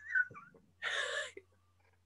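A young woman laughing: a brief high-pitched falling squeak, then a breathy exhaled laugh about a second in.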